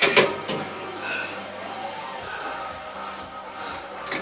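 Plate-loaded chest press machine with weight plates clanking as its lever arms are lowered and set down: one sharp clank at the start and a fainter one near the end, over background music.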